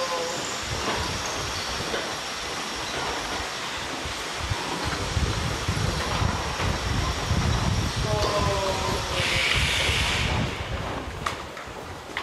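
Low rumble of a camera dolly's wheels rolling along a curved track, strongest in the second half. A voice speaks briefly about eight seconds in, followed by a short hiss.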